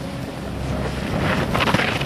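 Snowboard sliding and scraping over groomed snow, getting louder and harsher from about a second in as the rider carves up close, with wind buffeting the microphone.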